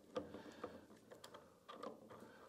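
Faint scattered clicks and light rattling of a chainsaw's metal chain links as gloved hands seat the chain on the drive sprocket of a Hyundai HYC40LI cordless chainsaw, with a few more clicks near the end.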